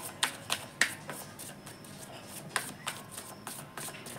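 Tarot deck being shuffled by hand, with a string of quick, irregular card slaps and clicks.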